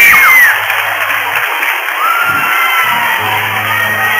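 School audience of children clapping and cheering at the end of a song, with a shrill cry just at the start and another about two seconds in. Acoustic guitars play softly underneath.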